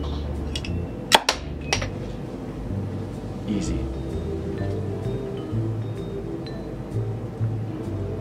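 A knife blade driven along a glass beer bottle's neck knocks off the crown cap: a sharp metallic clink about a second in, followed by one or two smaller clicks. Background music with a steady beat plays throughout.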